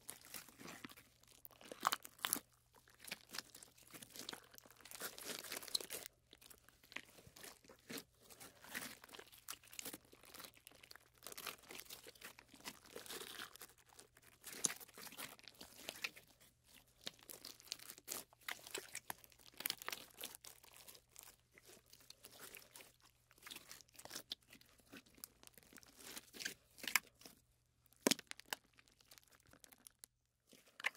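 Hands squeezing and stretching slime, giving a dense run of irregular small crackles and pops.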